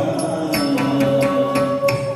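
Live Carnatic music for a Bharatanatyam dance. A vocal melody holds a long note from about half a second in, over crisp, even percussion strikes at about four a second.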